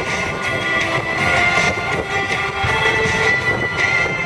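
Military jet transport's turbofan engines running on the ground: a steady high whine over a continuous rumble, with background music mixed in.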